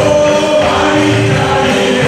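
A congregation singing a worship song together over instrumental accompaniment, loud and steady, with hand-clapping.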